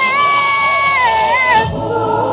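A high voice through loudspeakers holds one long note for about a second, then wavers and slides down, over other voices singing in a gospel worship song.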